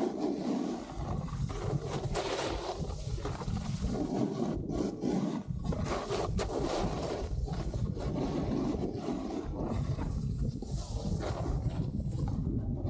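Snowboard carving down a groomed slope, its edges scraping the snow in a steady rush with short scrapes on the turns, under heavy wind rumble on the action camera's microphone.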